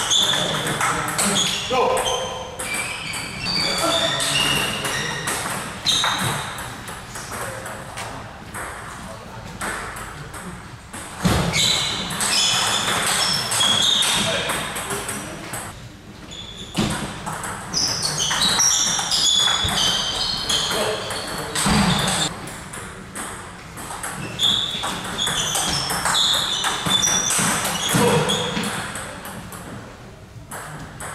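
Table tennis rallies in a large hall: the plastic ball clicking and pinging off bats and table in quick runs, with short pauses between points. Two heavier thumps land partway through.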